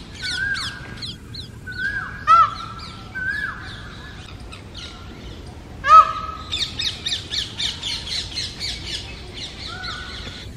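Indian peafowl (peacock) giving two loud calls, about two and a half seconds in and again about six seconds in, the second the louder. Around them come shorter repeated rising calls and the rapid high chirping of small birds.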